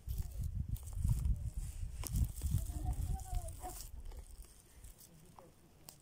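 Uneven low rumbling noise on the microphone, fading out after about four seconds. A faint voice is heard around the middle.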